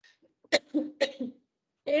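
A woman coughing twice, two short coughs about half a second apart.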